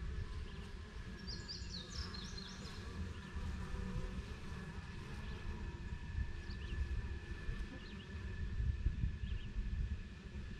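Honeybees buzzing faintly around a hive entrance over a low, uneven rumble. A bird gives a short, high, chattering phrase a little over a second in, with a few faint chirps later.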